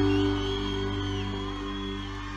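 A live band's held closing chord rings out and slowly fades, with faint crowd cheers and whistles over it.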